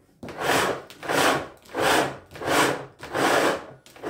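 Power cord being pulled out of the cord reel of a Philips XB2140 canister vacuum cleaner in hand-over-hand strokes. Each stroke gives a rubbing swish as the cable slides out of the housing, about five even strokes in four seconds.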